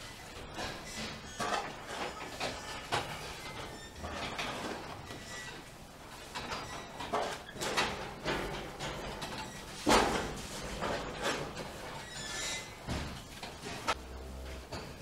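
Shovel scraping and pushing feed along a concrete floor in irregular strokes, with knocks mixed in; the loudest stroke comes about ten seconds in.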